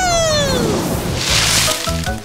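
Cartoon sound effects over a music bed: a falling whistle glides down in pitch over about a second, followed by a short noisy rustling crash of a dive into leaves.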